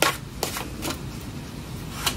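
Tarot cards handled and drawn from a deck by hand: three light card clicks in the first second.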